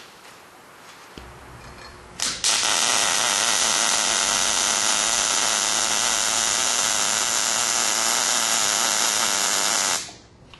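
MIG welding arc with the wire feed at 260 and the voltage at 18, starting about two and a half seconds in after a low hum and then holding a steady, even sizzle like paper tearing. This is the sound of stable wire feed near the right setting, the sound a good MIG weld should make.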